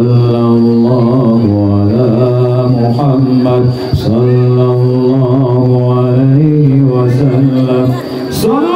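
A man's voice chanting shalawat, Arabic praise of the Prophet Muhammad, over a loudspeaker system, in long held notes that shift slowly in pitch, with a short break for breath about four seconds in.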